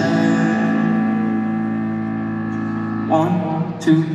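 A live piano chord held and slowly fading, ringing through a large arena. About three seconds in, new notes come in.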